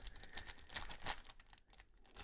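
Faint, irregular crinkling and clicking of a foil trading-card pack wrapper handled in gloved hands as it is worked open.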